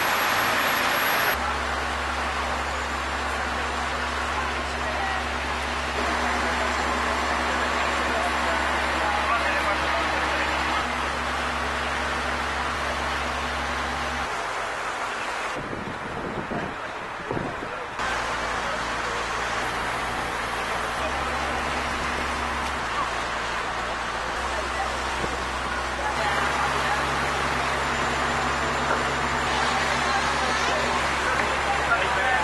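Passenger boat's engine running with a steady low hum under wind and water noise, with passengers talking in the background. The sound changes abruptly a few times where the recording is cut.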